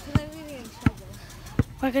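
Three sharp thumps about three-quarters of a second apart, the steady rhythm of walking steps knocking through a handheld phone. A girl's voice is held briefly near the start.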